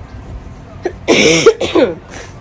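A woman coughing, two loud coughs about a second in.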